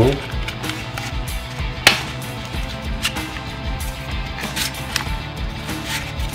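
Background music with a steady beat. Over it, a plastic magazine scrapes and knocks as it is pulled from and pushed into a fabric magazine pouch, with several sharp clicks, the loudest about two seconds in.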